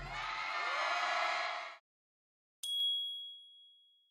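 A single bright electronic chime, the KOCOWA TV logo sting, strikes about two-thirds of the way in and rings away. Before it, the last of the stage sound cuts off abruptly, followed by a moment of silence.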